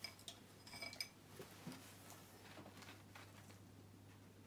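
Near silence, with a few faint clicks and small clinks in the first second or so as paint pots and a brush are handled on the table.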